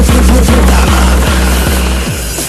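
Hardcore gabber electronic music: a distorted kick drum pounding about two and a half beats a second over a sustained deep bass drone and a dense, noisy upper layer.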